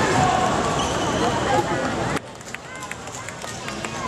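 Indoor badminton hall between rallies: a din of people's voices with short sneaker squeaks and light taps on the court floor. The din drops suddenly a little past halfway, leaving scattered squeaks and ticks.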